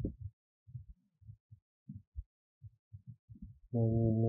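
Soft, irregular low thumps, about a dozen, from a keyboard and mouse being worked while editing code. Near the end a man's voice holds a steady, level 'ờ' hum.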